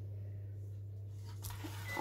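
Quiet room tone with a steady low hum and a soft knock about one and a half seconds in.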